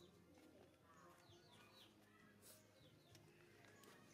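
Near silence with faint bird chirps in the background: short falling chirps in small groups, about a second in and again near three seconds.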